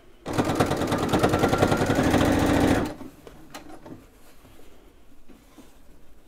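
A computerized sewing machine stitches in a fast, even run of needle strokes for about two and a half seconds, then stops abruptly. It is top-stitching along the edge of bias tape on cotton fabric.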